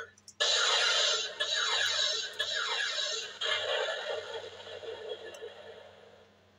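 Buzz Lightyear Power Blaster talking action figure's blaster sound effect: a loud electronic hiss laced with repeated falling zaps, starting about half a second in and fading away toward the end.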